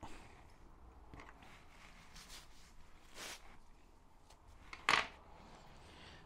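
Faint rubbing and rustling as a taper lock bush is wiped clean of grease by hand, with a couple of brief scuffs about two and three seconds in.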